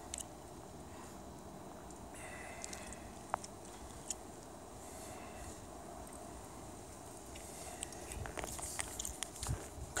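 Faint footsteps on snow and ice with scattered light clicks, growing more frequent in the last two seconds.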